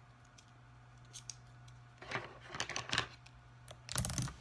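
Small clicks and scrapes of a pen and plastic highlighters being handled, starting about two seconds in, ending in a louder knock as they are set down on the laptop's plastic palm rest.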